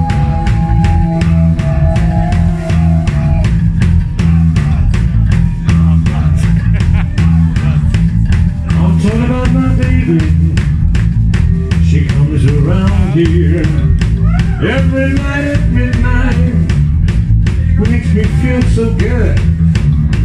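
Live rock band (electric guitar, bass and drum kit) playing loudly through an instrumental passage of a song. Held guitar notes in the first few seconds give way to lead lines that bend in pitch, over a fast, steady drum beat.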